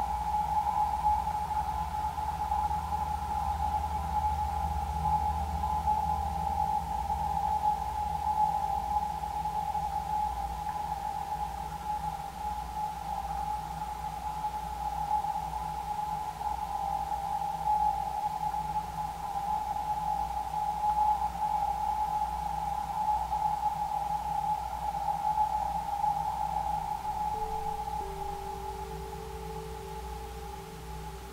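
Ambient electronic drone music: one steady, slightly wavering tone is held over a low hum, and two lower steady tones enter near the end.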